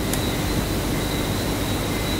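Steady rushing background noise with a faint, thin high-pitched whine running through it.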